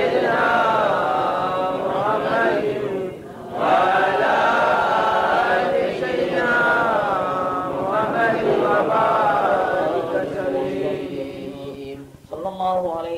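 Melodic chanting of Arabic devotional verse, a voice holding long, wavering notes in drawn-out phrases, with a brief breath break about three seconds in.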